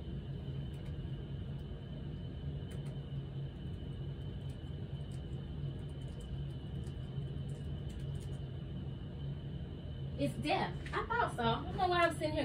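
Steady low room hum with a thin high whine above it and a few faint ticks, then a woman starts speaking about ten seconds in.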